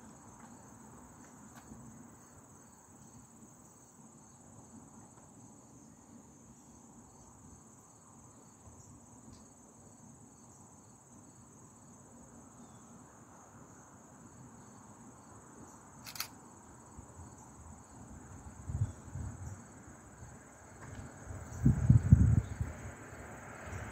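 Insects singing in a steady, high, even buzz from the trees, with a faint pulsing beneath it. A low hiss runs under it, with one sharp click about two-thirds through and a few low bumps near the end.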